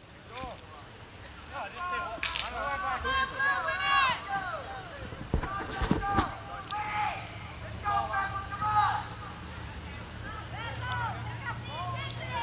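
Voices shouting and calling out across an open soccer field in short bursts, with a couple of sharp knocks, one about two seconds in and one near the middle.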